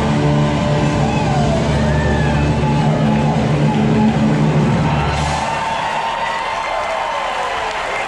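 Rock music ending on a long held chord that cuts off about five and a half seconds in, with an audience cheering and whooping over it. Applause carries on after the music stops.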